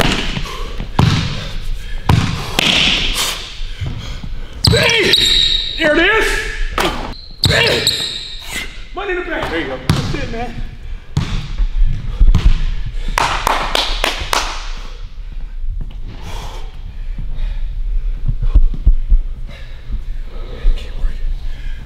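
Basketball bouncing repeatedly on a hardwood gym court, in irregular strokes that ring in a large hall, with men's voices in between.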